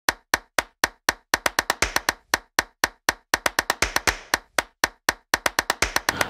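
Percussive soundtrack: sharp, dry clicks on a steady pulse of about four a second. From about a second in, quicker clicks fall between the beats. There is no melody or voice.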